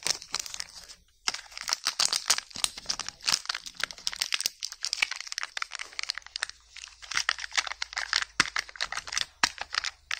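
Foil wrapper and sealing film of Kinder Joy eggs crinkling and tearing as fingers peel and unwrap them: a dense run of sharp crackles with a short pause about a second in.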